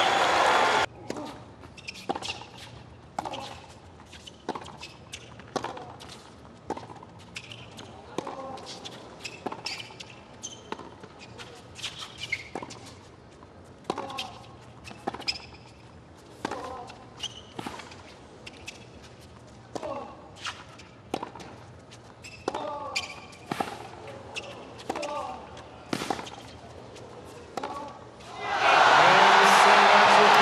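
Tennis ball struck back and forth in a long hard-court rally, a sharp racquet hit about once a second, with players' grunts and shoe squeaks between the hits over a hushed stadium crowd. Near the end the crowd breaks into loud cheering as the match-winning point ends.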